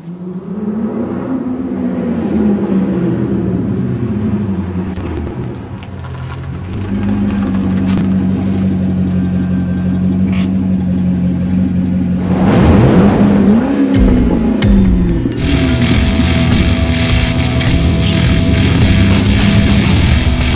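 Chevrolet Corvette's V8 engine running as the car arrives: its pitch rises and falls, then holds steady, with a brief louder surge about 12 to 13 seconds in. From about 15 seconds in, heavy rock music plays over it.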